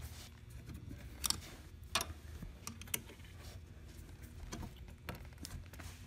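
Small metallic clicks as a steel coil lock spring is hooked onto the bolts of a rocker recliner mechanism, with a few sharp clicks roughly a second apart, over a faint low hum.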